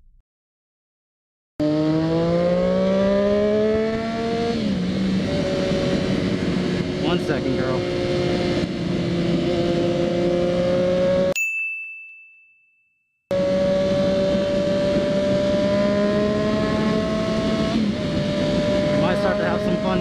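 Triumph Daytona 675's three-cylinder engine heard from the rider's helmet, with wind and road noise. It starts after a moment of silence, revs up through a gear, shifts up about four seconds in, then cruises at highway speed with a slowly climbing note. About halfway through, the engine sound fades out under a steady high beep for two seconds, then the engine cruising comes back.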